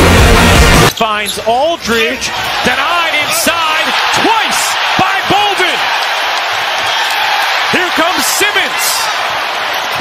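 Loud music cuts off about a second in, giving way to live basketball game sound: many short sneaker squeaks on the hardwood court and a ball bouncing over a steady arena crowd murmur.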